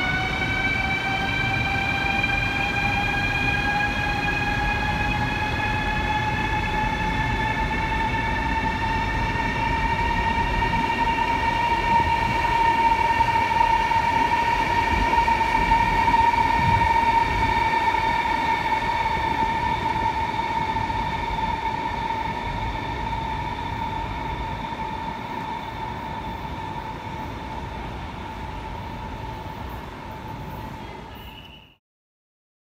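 CRH 'Harmony' high-speed electric train pulling out of the station, its traction motors whining over the rumble of the wheels. The whine rises in pitch over about the first ten seconds as the train gathers speed, then holds steady. The sound is loudest in the middle and fades toward the end as the train moves away.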